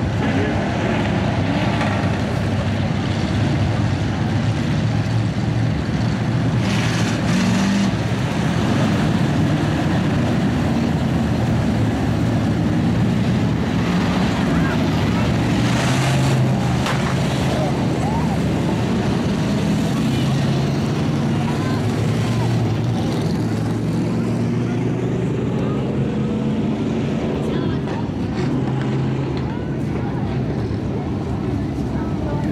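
Engines of dirt-track hobby stock race cars running steadily around the oval, swelling briefly as cars pass about a third and halfway in.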